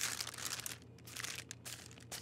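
Parchment paper crinkling faintly as it is peeled off a block of chilled croissant dough, loudest at first and then dying away to a few light rustles.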